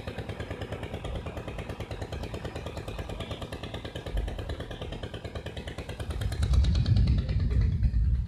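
An engine running with a rapid, even pulse, joined about six seconds in by a deep rumble that grows louder.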